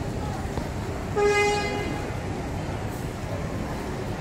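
A single short vehicle horn toot, one steady tone lasting about half a second, a little over a second in, over steady background crowd noise.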